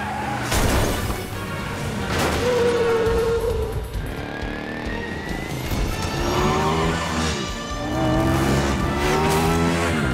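Cartoon chase sound effects: a motorcycle engine revving in rising sweeps, with two sudden bangs in the first two seconds and a tire screech, over action music.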